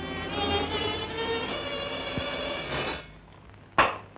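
Orchestral string music for about three seconds, then it stops. Near the end comes a single sharp thud, a thrown dart striking wood.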